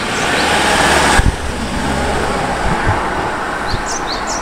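Street traffic: a vehicle passing close by, its hiss dropping off sharply about a second in, over a steady low engine hum.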